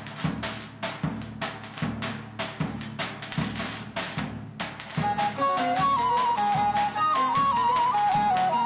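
Turkish folk halay dance music. A drum beats a steady rhythm on its own, and about five seconds in a flute-like wind instrument comes in with the melody over it.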